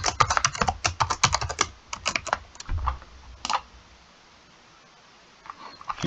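Typing on a computer keyboard: a quick run of keystrokes for about two seconds, then a few scattered clicks.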